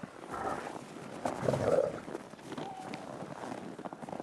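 Gray wolves growling and snarling during a pack dominance scuffle, loudest about one and a half seconds in, with a short steady higher note shortly after.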